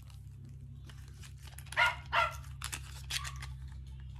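A dog barking twice in quick succession, about two seconds in.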